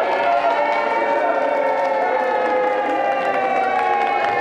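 A group of people cheering together in one long drawn-out shout that slowly falls in pitch. Clapping starts near the end.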